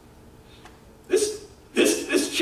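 A man's voice after a pause: about a second of room tone, then one short, sharp vocal sound, and speech starting again near the end.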